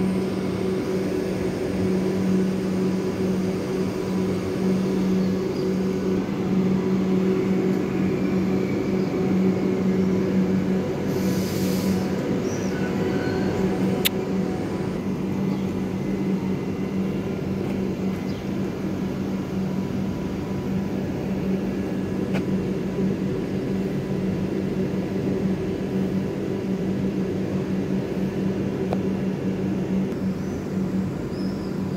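Renfe Class 130 (Alvia) electric train humming steadily with one low electrical tone as it pulls out. A brief high hiss comes about eleven seconds in.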